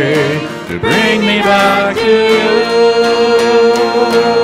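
Live worship band: several voices singing over acoustic guitar, the voices wavering with vibrato at first. About halfway through, the singing settles into long held notes.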